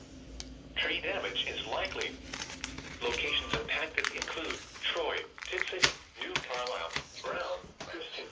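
Automated National Weather Service voice reading a tornado warning through the small speaker of a Midland weather alert radio, with a sharp click about six seconds in.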